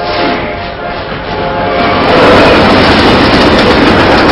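Train passing at speed, a loud rushing rumble of wheels on rails that builds about two seconds in and drowns out background music that fades early on.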